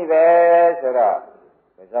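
A man's voice preaching: one long syllable held at a steady pitch for most of a second, then more speech, with a short pause near the end.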